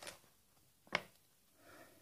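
One sharp snip of small scissors cutting off a sticker's overhanging edge about a second in, after a fainter tick at the start.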